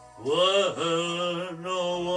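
A man singing one long drawn-out note into a microphone: his voice swoops up and falls back, then settles into a held note with a slight waver.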